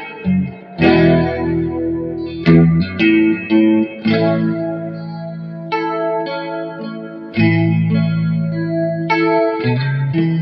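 Electric guitar played slowly: chords and single notes struck every second or two and left to ring out.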